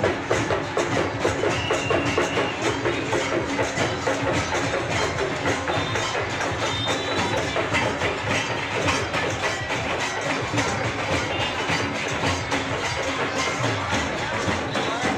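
Several drums played by marching procession drummers, beaten in a busy, even rhythm.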